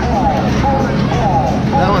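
Electronic arcade game music and sound effects, a run of short repeated sliding tones, over the steady low hum of arcade machines.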